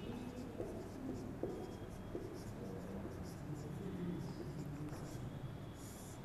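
Marker pen writing on a whiteboard: faint, irregular scrapes and squeaks of the felt tip as a word is written out stroke by stroke.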